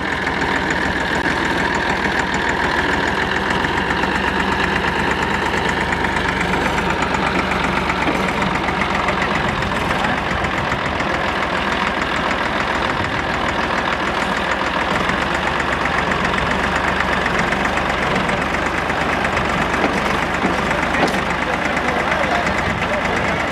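Farm tractor's diesel engine running steadily at idle, with a fast, even firing beat.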